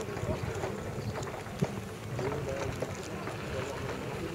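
Wind noise on the microphone of a small camera mounted low on a land yacht: a steady, low, rumbling buffeting.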